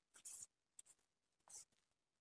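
Near silence, with a few faint, brief rustles of a saree's fabric as it is spread out.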